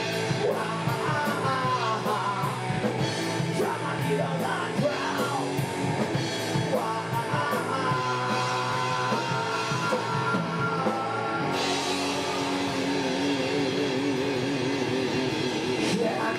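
Live rock band playing: distorted electric guitar, bass, keyboard and drum kit under a male lead singer. About eleven and a half seconds in, the driving drum beat stops and the band holds a ringing chord with cymbal wash and a wavering held note.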